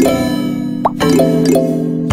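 Quizizz in-game background music: a light, bright mallet-percussion melody over held chords. A short rising blip sounds a little under a second in.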